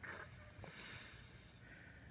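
Very faint hiss and gurgle of air being drawn in through the open vent valve of a plastic water drum as water drains out through a hose, relieving the vacuum in the tank.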